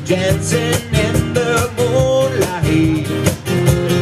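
Live acoustic duo music: strummed acoustic guitar over a steady cajón and cymbal beat, with a melody line gliding up and down above the chords.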